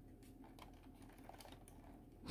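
Faint, scattered small clicks and taps of fingers handling a plastic scale model vehicle and its tracks, about half a dozen in two seconds.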